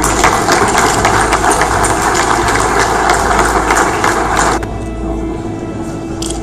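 Audience applause: dense clapping that stops abruptly about four and a half seconds in, leaving a low steady hum.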